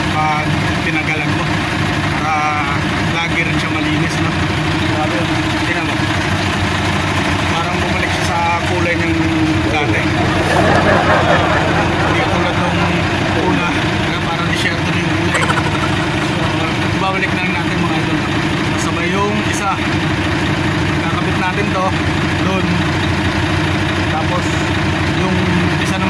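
Heavy diesel truck engine idling steadily, a constant low hum, with voices over it at times.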